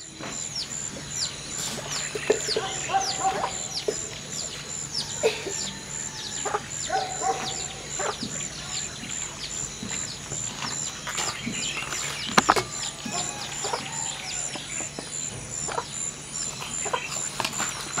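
Outdoor ambience of birds chirping, many quick high chirps, over a steady, finely pulsing high-pitched trill. Scattered clicks and knocks come through it, the sharpest about twelve seconds in.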